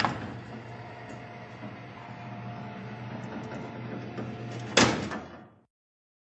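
Barred sliding jail-cell door rolling shut with a steady mechanical rumble for about five seconds, ending in a loud bang as it slams closed near the end.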